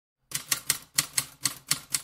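Typewriter keys clacking as a sound effect, eight even strikes at about four a second.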